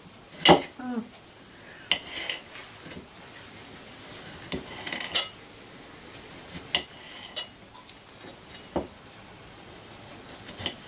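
Small kitchen knife slicing a cucumber on a ceramic plate. About ten irregular sharp clicks come as the blade cuts through and strikes the plate, the loudest about half a second in.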